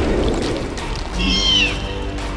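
A short, high-pitched squeal of a cartoon baby dinosaur, falling slightly in pitch, about a second and a half in, over steady background music.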